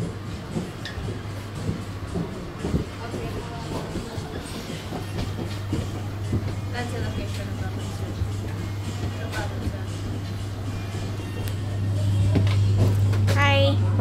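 Steady low hum of the boat's machinery, growing louder near the end, under faint background music and distant chatter. A short voice sounds just before the end.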